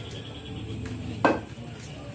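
A single sharp click of pool balls about a second in, over a low steady hum.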